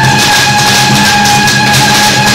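Temple-procession band music: a reed horn holds one long note over a steady beat of drums and cymbals.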